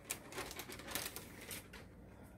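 A quick, irregular run of light clicks and taps.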